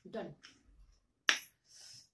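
A woman says a short word, then one sharp, loud click sounds a little past halfway through, followed by a brief soft hiss.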